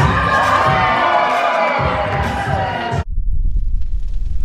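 Dance music with a thumping beat and a crowd cheering and shouting over it. About three seconds in it cuts off suddenly to a deep, steady rumble.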